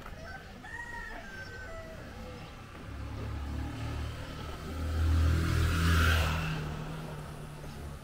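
A rooster crows in the distance near the start. Then a motorcycle engine approaches and passes close by, loudest about five to six seconds in, and fades away.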